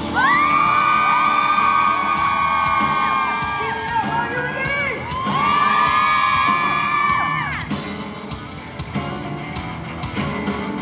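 Live pop-rock band music with long held vocal notes in two phrases, the first for about four seconds and the second for about two and a half, mixed with audience whoops and cheering.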